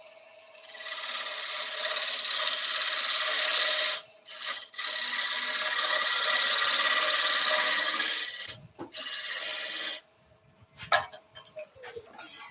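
Square-ended skew chisel scraping the face of a wood blank spinning on a lathe: a steady rasping cut in two long passes with a short break about four seconds in, over the lathe's faint steady whine. The cutting stops about ten seconds in, as the last millimetre or so comes out of the recess.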